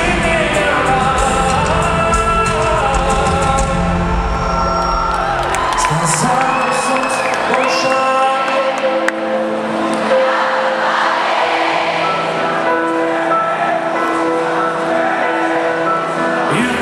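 A live pop song in a large arena with the crowd singing along and a few whoops. The bass and drums drop out about five seconds in, leaving the voices over a lighter sustained backing.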